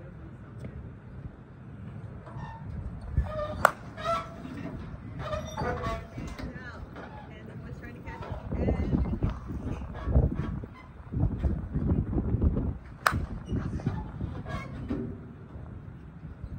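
2024 ASA TruDOMN8 slowpitch softball bat striking the ball twice, each hit a single sharp crack, the first a few seconds in and the second near the end, over wind rumbling on the microphone.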